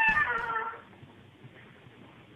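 A single short, meow-like animal call whose pitch bends up and down for under a second, then a faint low background hum.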